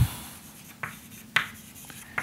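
Chalk writing on a blackboard: three short sharp strokes, one at the start, one just under a second in and one about a second and a half in, with quiet between.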